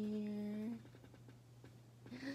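A woman's voice holding one long, steady note, as in humming, which stops under a second in.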